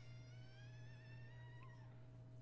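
Near silence: a steady low hum, with a faint drawn-out tone rising slowly in pitch that stops shortly before the end.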